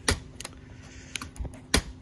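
Fingernail clicking and picking at the plastic locking flap of a flat ribbon-cable (FPC) connector on a TV panel's circuit board, trying to flick it open: a few sharp, irregular clicks, the loudest right at the start and another strong one about three-quarters of the way through. The flap is stiff and resists being flicked up.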